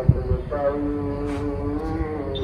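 Gurbani chanted over a gurdwara's loudspeaker and carried across the neighbourhood, a voice holding long drawn-out notes.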